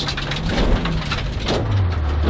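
Honda Civic rally car heard from inside the cabin at speed: engine running under a steady hiss of tyre and road noise, its note dropping lower about one and a half seconds in as the car slows for a square right turn.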